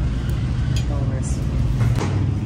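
Bakery background noise: a steady low rumble with faint voices and a few light knocks.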